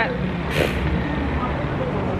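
Steady outdoor street noise with a low traffic rumble, and a short hiss about half a second in.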